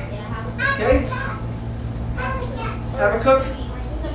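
Children's voices speaking and calling out, in short bursts, over a steady low hum.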